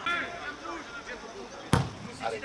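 A single sharp thud of a boot striking a football about three-quarters of the way in, a goalkeeper's long kick. Faint shouting voices of players on the pitch run under it.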